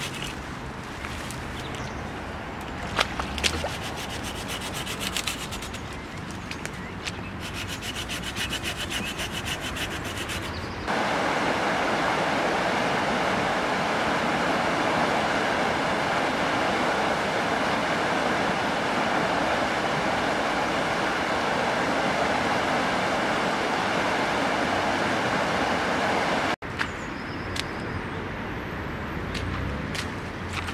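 A hand pruning saw cutting through a tree branch in quick back-and-forth strokes. About a third of the way in it changes abruptly to the steady, louder rush of river water churning out through a weir's arches, which cuts off suddenly near the end.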